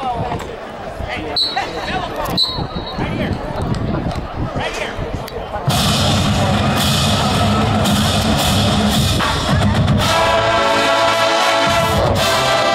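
Stadium crowd chatter with scattered calls, then about halfway through a marching band starts playing loudly with drums and cymbals; brass joins in near the end.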